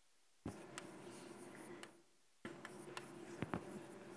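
Chalk scratching on a blackboard as words are written, in two runs: the first begins with a sharp tap about half a second in, the second about two and a half seconds in, with a few sharp clicks of the chalk against the board.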